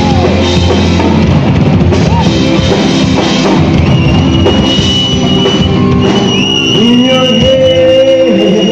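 Live rock band playing loudly: drum kit and guitars, with a long held note coming in about halfway through.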